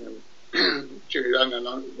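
A man's voice in two short bursts, about half a second in and again past the middle, heard over a webcam call's narrow audio.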